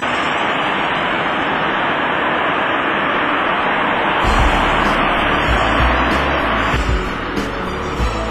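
Steady road traffic noise from a busy multi-lane road below, with a deep rumbling that joins about four seconds in.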